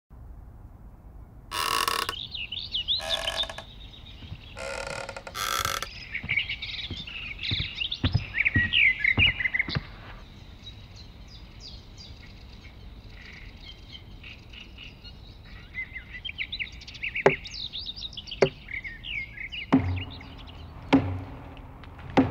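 Birds chirping and twittering, with four short harsh bursts at the start and scattered sharp knocks in the later part, the loudest of them near the end.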